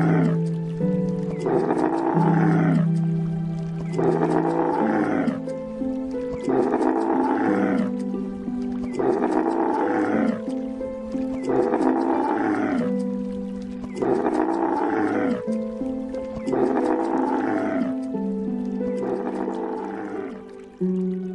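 A camel's groaning bellow, the same call repeated about every two seconds, over background music with long held chords.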